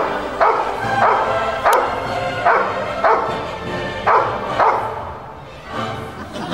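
A large dog barking repeatedly, about eight barks in the first five seconds, with music underneath.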